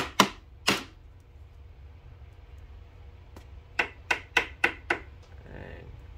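Sharp clicks and taps of hard objects being handled close to the microphone. About three come at the start, then a quick run of five about a third of a second apart near the middle.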